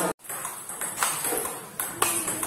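Table tennis balls being hit in a multiball drill: sharp plastic clicks of ball on bat and table, spaced under a second apart, after a brief gap near the start.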